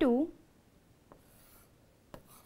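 Pen-type stylus writing on the glass of an interactive touchscreen board: faint scratching strokes, with a light tap about a second in.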